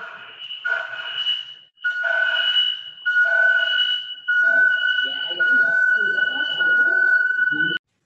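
Garbled video-call audio: a steady high whistle with a second tone an octave above it, broken by a few short gaps, over a muddle of voice-like sound. It cuts off abruptly just before the end.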